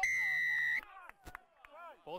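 Rugby referee's whistle blown once, a steady shrill blast just under a second long that cuts off sharply, awarding a try.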